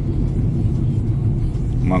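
Steady low rumble of a car being driven, engine and tyre noise heard from inside the cabin.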